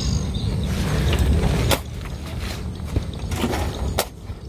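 Steel shovel digging and scraping into wet, gravelly soil, with a few sharp scrapes, over a steady low rumble.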